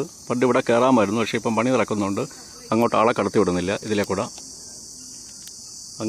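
A person speaking for about four seconds, then pausing, over a steady high-pitched shrill of insects.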